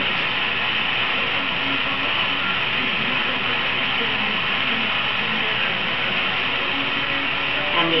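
Handheld gas torch burning with a steady hiss as a glass rod is melted in its flame.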